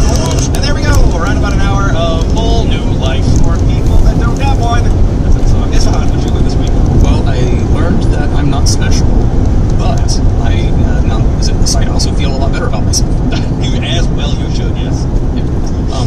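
Steady road and engine noise of a car cruising at highway speed, heard from inside the cabin, with voices talking under it, clearest in the first few seconds.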